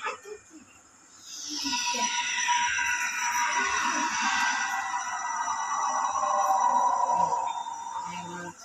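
Production-company logo sound effect played through a television speaker: after a quiet first second, a long shimmering synthesized sweep that falls steadily in pitch over about six seconds, then fades.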